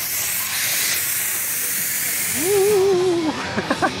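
Fog machine blasting a loud, steady hiss that fades out near three seconds in, followed by a long wavering vocal wail and a short laugh.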